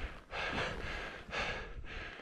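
Heavy breathing close to the microphone: soft in-and-out breaths, a few per couple of seconds, from someone standing at altitude.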